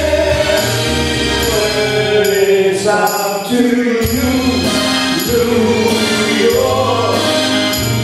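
Live band playing a song: electric guitar, keyboard and tambourine over sustained low bass notes.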